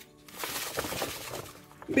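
Ground biscuit crumbs pouring from a bag into a bowl: a soft, grainy hiss that fades out after about a second and a half.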